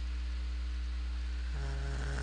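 Steady low electrical hum with hiss, the background noise of the recording setup. About one and a half seconds in, a faint steady pitched hum joins it.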